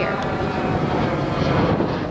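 Jet airliner sound effect: a loud rushing noise with a faint whine in it, swelling to a peak about a second and a half in, then starting to fade.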